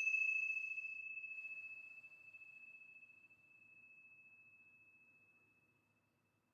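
The ring of a small handheld metal chime, struck once just before, dying away: one clear high tone with fainter higher overtones, fading over about five seconds until it is gone.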